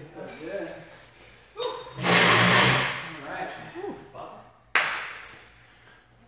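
Indistinct voices, a loud rush of noise lasting about a second, two seconds in, and a sudden thud near five seconds.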